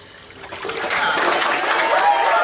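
Water splashing in a metal stock-tank baptistery as a girl is lowered under and raised, while the congregation breaks into clapping and cheering that grows louder from about a second in.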